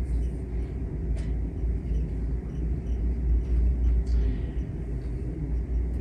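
Steady low rumble of background noise picked up by a lapel microphone, with a faint click about a second in and another about four seconds in.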